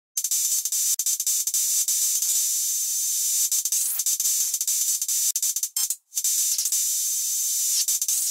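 Intro of a breakcore electronic track: a thin, high hiss of noise with no bass, broken by many irregular sharp clicks, cutting out briefly about six seconds in.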